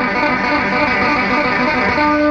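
Electric bass guitar played solo, a fast continuous run of notes.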